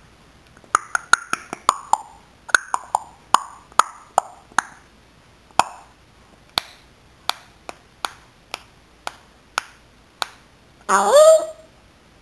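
African grey parrot making a long run of sharp clicks and pops, quick at first and slowing to about two a second, then a short voiced call with a sliding pitch near the end.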